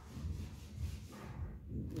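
Faint rustling of a plastic-wrapped pack of washcloths being handled, over a low steady hum.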